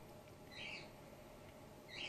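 Grey-headed flying-fox pup giving one short, faint, high-pitched squeak about half a second in, against a quiet background.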